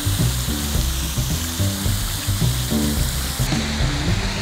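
A large school of feeding fish splashing and churning the water surface, a steady hiss of splashing. Background music plays under it.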